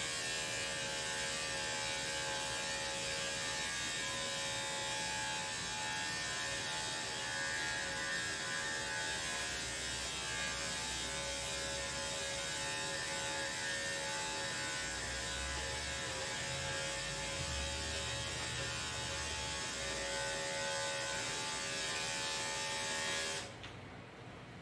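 Electric dog grooming clipper (Andis five-speed) fitted with a two guard, running steadily with an even hum as it is worked through the coat. It switches off suddenly just before the end.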